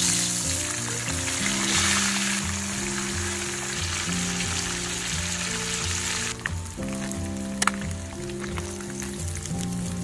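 Whole turmeric-coated torpedo scad (ikan cencaru) frying in hot oil in a wok: a loud, dense sizzle that thins after about six seconds into lighter sizzling with scattered pops and crackles. Background music with a steady beat plays underneath.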